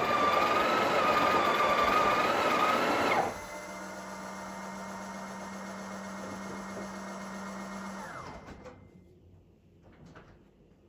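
Breville Oracle Touch's built-in burr grinder running loudly with a steady whine while grinding a double dose into the portafilter, stopping abruptly about three seconds in. A much quieter steady motor hum follows for about five seconds, the machine's automatic tamping, and dies away near the end.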